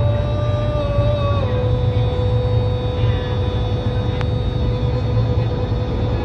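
Gondolier singing one long held note that steps down in pitch about a second and a half in and is then held, over a steady low hum.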